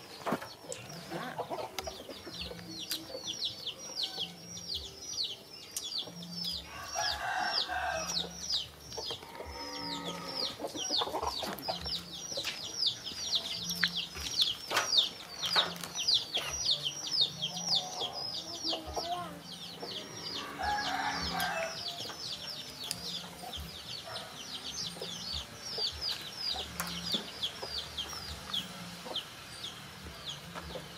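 Chicks peeping: a steady run of short, high, falling peeps, several a second, with two brief lower clucking calls from an adult chicken about seven seconds in and again near twenty seconds.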